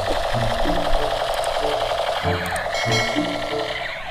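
Toy AK-47 rifle's electronic firing sound: a continuous rapid rattling buzz that cuts off shortly before the end, over background music.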